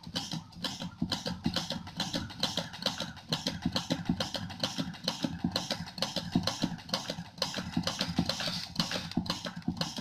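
Hand-operated pressure pump on a calibration test stand being worked quickly, a fast run of clicks several times a second, as pressure is built up on the pressure transmitter under test.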